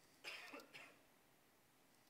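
A man coughing twice in quick succession, short and sharp, about a quarter of a second in.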